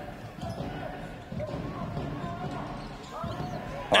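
Handball game sounds in a sports hall: a handball bouncing on the court floor under a general murmur of crowd voices.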